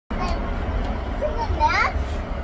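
A child's brief high-pitched vocal sound, rising in pitch about three quarters of the way through, over a steady low rumble.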